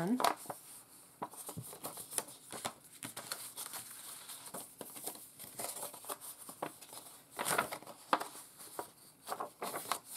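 Printed paper envelopes rustling and crinkling in the hands as they are picked up, their flaps opened and unfolded, with a louder rustle about three quarters of the way through.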